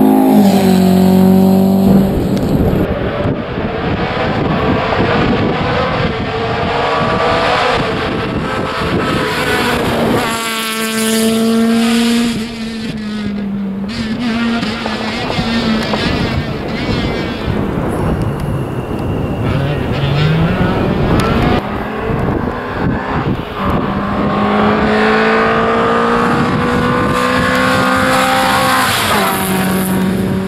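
Rally cars driven hard one after another on a special stage, engines revving high under full throttle, with the pitch dropping and climbing again at gear changes and lifts.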